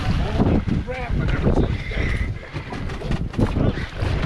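Wind buffeting the microphone, with a hooked fish splashing at the surface beside the boat and voices calling out briefly.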